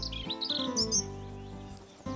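Soft background music with high bird chirps over it in the first second; the music fades down toward the end.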